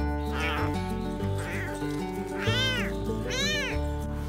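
Young tabby kitten crying: about four high meows that rise and fall in pitch, the two loudest in the second half, over background music.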